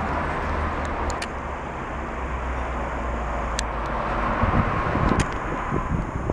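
Street traffic on a city road: a steady hum of passing cars with a low rumble that eases a little past four seconds in, and a few faint clicks.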